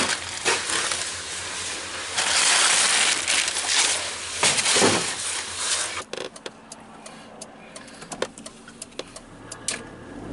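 Close rustling and handling noise, loudest for a couple of seconds in the middle, as bags and plastic crates are moved. After about six seconds it drops to a quieter stretch with scattered clicks and knocks.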